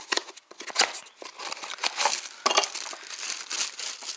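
Packaging being handled as an e-bike kit's display unit is taken out of its cardboard box: irregular crinkling and rustling with scattered sharp clicks.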